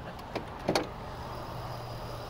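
Pickup truck's hood being lifted open: a few light clicks, then a short squeak, over a faint steady low hum.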